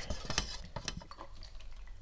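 Wooden stir stick scraping and clicking against the inside of a metal quart paint can while stirring silver lacquer base coat; the quick strokes die away a little past a second in.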